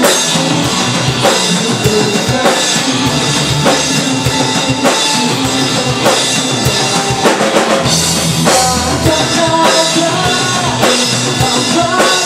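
Live rock band playing: a drum kit keeping a steady beat with bass drum and snare, under electric guitars and bass guitar.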